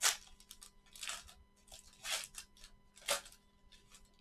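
Plastic wrapper of a 2019 Panini Limited football card pack being torn open and crinkled by gloved hands: four short crackling rips about a second apart, the first the loudest, with small crinkles between them.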